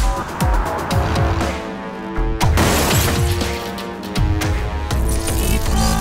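Cartoon background music with a steady low beat, and a crash sound effect about two and a half seconds in.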